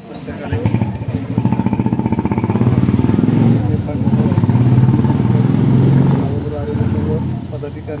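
A motor vehicle's engine running close by, growing louder over the first few seconds and easing off near the end, with people talking over it.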